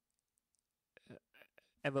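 A pause of silence, then a few soft mouth clicks from a speaker about to talk, and the word "ever" spoken just before the end.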